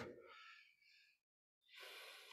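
Near silence, with a soft intake of breath near the end.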